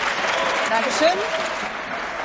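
Applause from an assembly in a large chamber, with a murmur of voices mixed in, starting suddenly.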